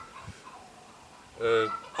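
A domestic hen cackling on and on. After a quiet second, one loud call comes about one and a half seconds in.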